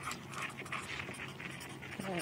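Felt-tip marker writing on paper: a faint run of short scratchy strokes, several a second.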